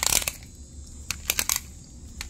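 Toy car's compressed-air piston engine, its bottle filled with water and air, giving a short spurting hiss as the wheels are spun, then a few light clicks. It is not running: with water in the bottle the engine fails to work.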